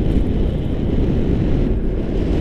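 Wind buffeting the microphone of a pole-mounted action camera during a tandem paraglider flight: a loud, steady, rough low rumble of rushing air.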